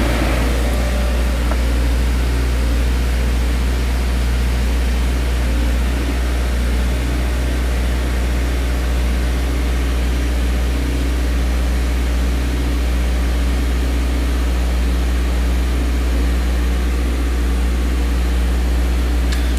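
Car engine idling steadily, heard from inside the cabin: a constant low hum that does not change.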